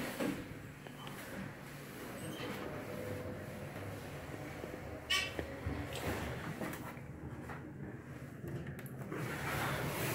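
Dover hydraulic elevator cab running, a faint steady hum inside the cab, with a short squeak about five seconds in.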